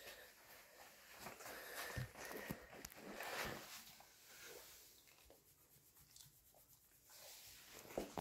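Faint scratching and rustling with a few soft clicks: a corgi shifting and rolling on its fabric dog bed and blanket.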